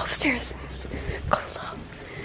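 A person whispering a few short, hushed phrases.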